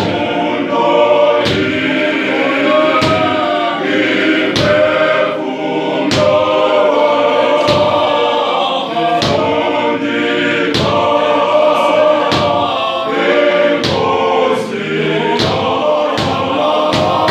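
Men's choir singing a gospel hymn in several-part harmony, with hand claps keeping a steady beat about every three-quarters of a second.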